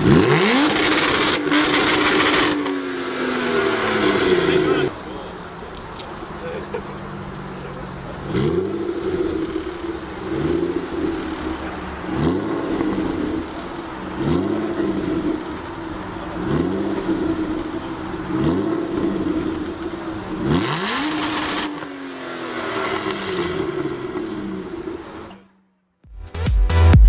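Aston Martin V12 revved while parked. A big rev at the start falls away over a few seconds. Then come six short blips of the throttle about two seconds apart, and another big rev near the end that dies away.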